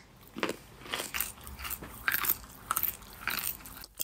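A person chewing a raw carrot stick close to the microphone: a run of irregular crunches.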